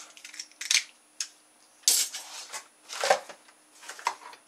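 Handling noise from a plastic snap-off craft knife and small objects in a cardboard box: scattered sharp clicks and short scrapes, a few to the second, with quiet gaps between them.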